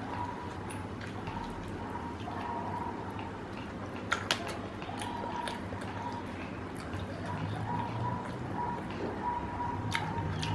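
Faint wet chewing of fried chicken, with crust and meat being pulled apart by hand, and a couple of sharp little clicks about four seconds in, over a steady low hum.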